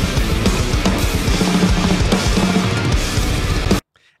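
Drum playthrough of a heavy progressive metal track: a full drum kit with busy kick drum and cymbals over distorted band backing. It cuts off suddenly near the end.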